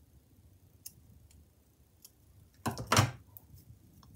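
Faint clicks of small scissors snipping crochet thread, then a brief louder rustle of handling about three seconds in.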